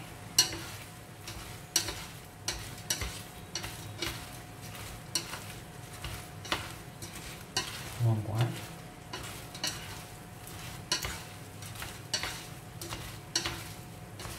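Whole freshwater prawns being stir-fried in a stainless-steel frying pan, wooden chopsticks tossing them and knocking against the pan about twice a second over a light sizzle. A faint steady tone runs underneath.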